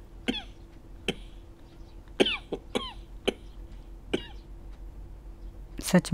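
A string of brief, separate coughs, about eight, spaced irregularly through the stretch, a few ending in a short falling voiced tail.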